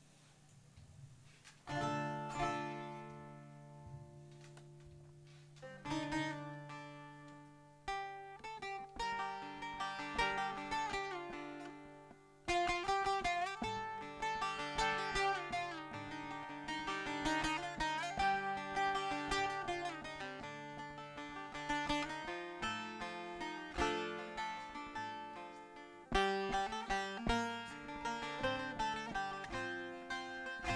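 Bağlama (saz, the long-necked Turkish lute) playing the instrumental introduction to a türkü. A few strummed chords are left to ring out, then a running plucked melody starts about eight seconds in and carries on.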